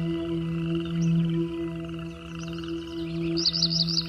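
Ambient relaxation music: a sustained low drone that slowly swells and fades, layered with a steady rapid trill of night frogs or insects. A quick run of bird chirps comes in near the end.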